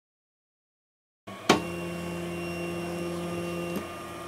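About a second of silence, then a sharp click and a CTC desktop 3D printer running with a steady hum of several pitched tones, which shift slightly near the end.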